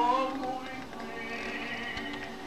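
Music: a melody with sliding, wavering pitch over steadier held notes, rising in a slide at the start.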